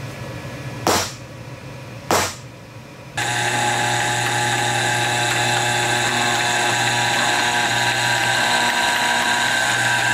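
Two sharp hammer strikes on a centre punch marking a stainless steel rod, then a drill press starts abruptly about three seconds in and runs steadily with a mix of level whines and hum, a 7/64-inch bit drilling through the rod clamped in a vise.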